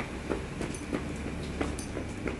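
Metal shopping cart rolling over brick pavers: the wheels rattle over the joints in a quick, even clickety-clack, about three clicks a second, over a low rumble.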